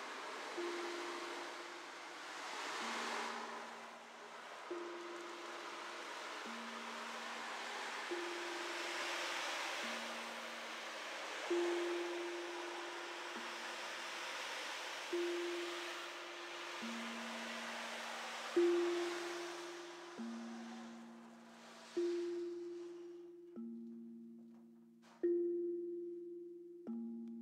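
Two pitched sound-bath instruments struck in turn, a low note and a higher one, about one strike every 1.7 seconds, each note ringing on until the next. A soft rushing wash sits underneath and fades out near the end, when the strikes stand out more sharply.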